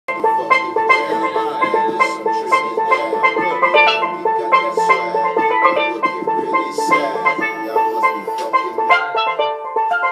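Steelpan struck with a pair of sticks, playing a quick rhythmic melody of rapid strokes with one note repeated steadily underneath.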